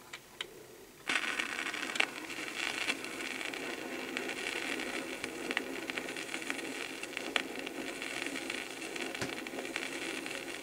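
Turntable stylus setting down on a red plastic flexi-disc (sonosheet) with a couple of small clicks, then about a second in the groove's surface noise starts: a steady hiss with scattered crackles and pops.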